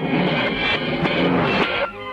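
Cartoon soundtrack: a loud, dense, noisy burst of sound effect over the music, cutting off sharply just before the end.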